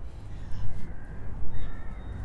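A bird calling faintly in the second half, over a steady low rumble.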